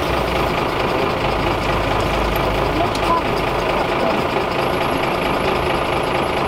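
Steady street noise with a truck's diesel engine idling, its low rumble swelling briefly about two seconds in, and faint voices in the background.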